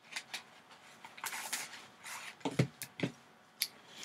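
Hands working a small cardboard card box and sliding out a card in a rigid plastic holder: scattered soft clicks and scrapes, with a longer sliding rustle about a second in and a few sharper clicks of plastic and cardboard later on.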